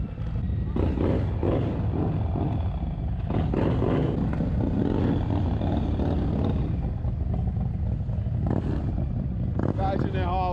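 A motorcycle engine running at low speed, with a steady low noise underneath and people's voices in the background.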